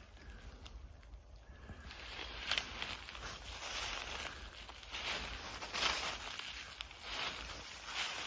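Footsteps on dry bamboo leaf litter: irregular rustling, crunching steps that start about two seconds in, with a few sharper crunches.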